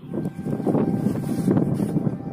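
Wind buffeting the microphone: an irregular low rumbling rush that swells up about half a second in.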